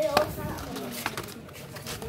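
Cardboard product box being opened and handled, with a few light clicks and the rustle of paper packing inside.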